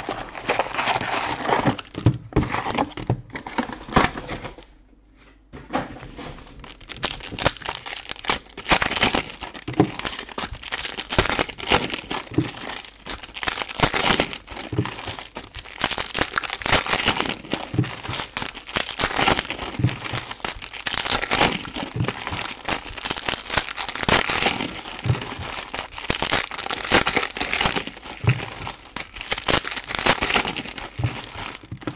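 Foil wrappers of Panini Prizm Breakaway trading-card packs crinkling and tearing as packs are handled and ripped open, with a short lull about five seconds in.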